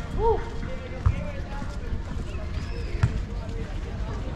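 Outdoor walking ambience with low thuds of footsteps on paving stones, two of them sharp and about two seconds apart. Snatches of distant voices and a brief rising-and-falling call come just after the start.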